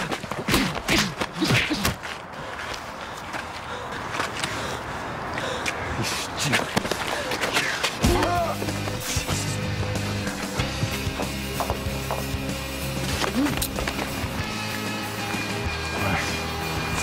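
Scuffling and knocks with short strained voice sounds from a physical struggle, thickest in the first couple of seconds. About halfway through, a music score with low held notes that shift step by step comes in and carries on.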